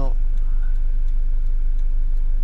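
Camper van's engine idling steadily while the vehicle stands still, a constant low rumble, with a few faint ticks over it.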